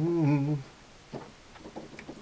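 A male voice sings the end of a line, a short held note that bends in pitch for about half a second, then stops. A pause follows, with a few faint clicks.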